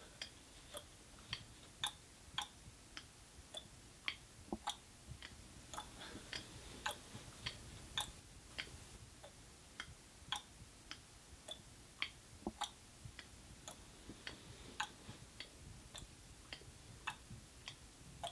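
A run of sharp ticks, a little under two a second and mostly evenly spaced, over a faint steady hiss.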